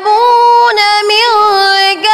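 A boy's voice reciting the Quran in a melodic chant, holding long high notes with wavering ornaments and short breaths between phrases.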